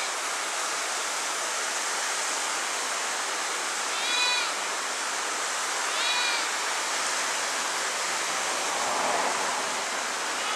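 Small waves washing steadily over a rocky shoreline, with a slightly louder wash near the end. Twice, about four and six seconds in, an unseen animal gives a short call that rises and falls.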